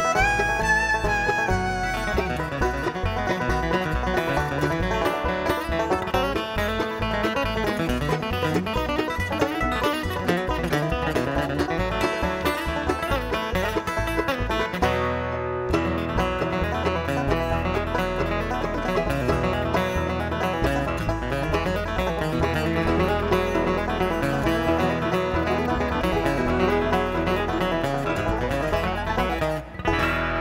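Live bluegrass band playing an instrumental tune on banjo, acoustic guitar, mandolin, fiddle and upright bass.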